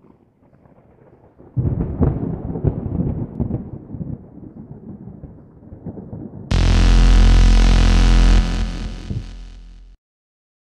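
Logo-intro sound design: a low, crackling rumble that starts suddenly about a second and a half in and gradually dies away, then a loud sustained synth drone about six and a half seconds in that drops in level near the end and fades out.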